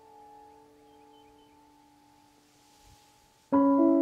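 Background piano music. A held chord fades away quietly, and about three and a half seconds in, new piano chords come in loudly.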